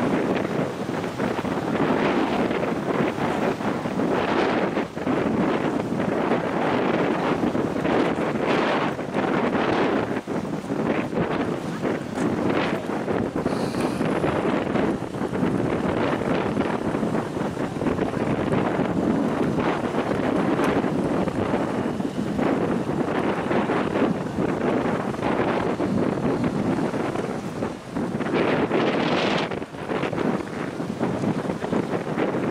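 Wind buffeting the camera's microphone: a steady loud rush that swells and drops in irregular gusts.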